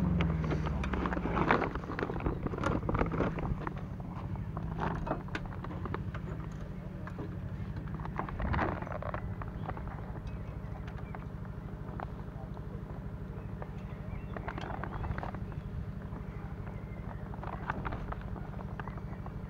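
The aerial work platform's engine runs with a steady low hum. Over it come clicks and rustles of a woven plastic carrier bag and nest twigs being handled, busiest in the first few seconds and again briefly around the middle and near the end.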